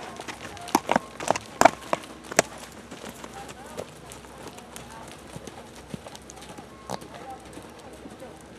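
Horses walking on a dry dirt trail, hooves clopping: a few sharp, irregular hoof strikes in the first two and a half seconds, then fainter scattered steps. Faint voices can be heard behind them.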